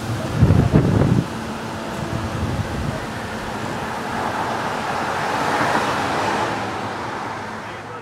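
Wind and road noise heard from inside a slowly moving car, with a heavy wind buffet on the microphone about half a second in, then a steady hiss that swells a few seconds later.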